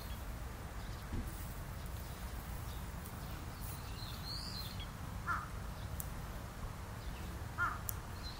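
Bird calls over a steady low background noise: a high rising-and-falling note about four seconds in, then two short, harsh, caw-like calls about five and seven and a half seconds in.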